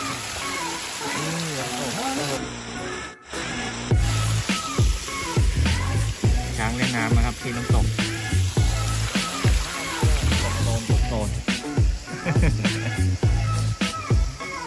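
Water running and splashing from a fountain, with voices, for the first couple of seconds. After a short dropout about three seconds in, background music with a steady, heavy beat takes over.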